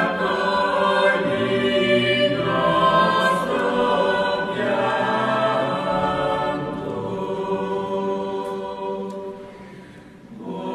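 A choir singing slow, sustained chords, dipping quieter near the end.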